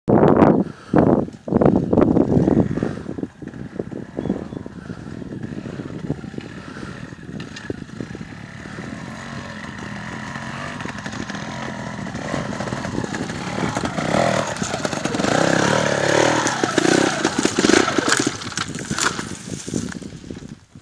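Trial motorcycle engine revving in loud short blips for the first few seconds, then a running note that grows steadily louder as the bike climbs closer, its revs rising and falling near the end.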